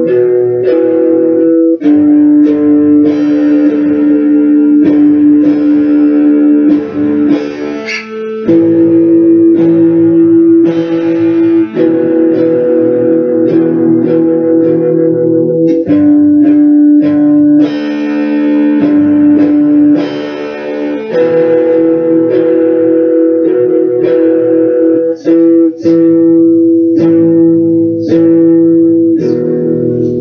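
A guitar playing a slow chord progression, each chord ringing for a few seconds, with a few brief breaks between chords.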